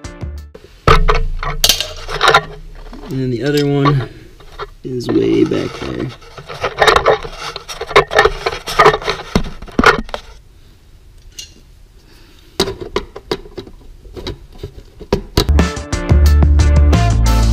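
Hand tools clicking and knocking against metal and plastic as a ratchet and screwdriver work at underbody fasteners, in irregular bursts with a quieter pause in the middle.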